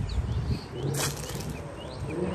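Outdoor background noise: a steady low rumble with a few faint, short high chirps, and one sharp click about a second in.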